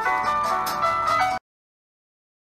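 Background music, a light tune of short, separate notes, that cuts off suddenly about a second and a half in.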